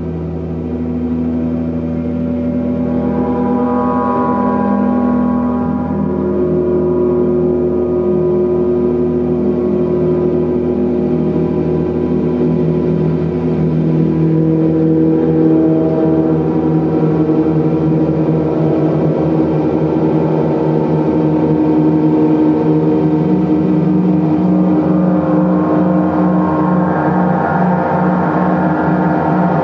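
Large hanging gongs played continuously in a gong bath, giving a dense wash of many overlapping ringing tones that shift in pitch and slowly build in loudness.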